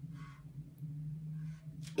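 Quiet room with a steady low hum, and a soft brief rustle near the start and again near the end.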